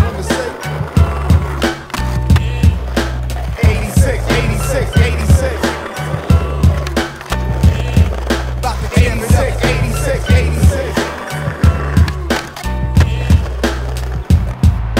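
Hip-hop instrumental beat over skateboard sounds: wheels rolling on asphalt and the wooden deck clacking as it is popped and landed, several times.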